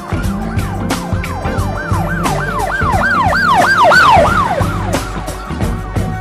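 A siren-like effect of quick rising-and-falling wails, about three a second, laid over music with a steady beat. The wails swell to their loudest about four seconds in and fade out by five.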